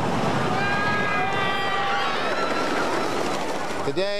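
Phoenix wooden roller coaster train rumbling and clattering along its wooden track, with riders screaming and yelling from about half a second to three seconds in.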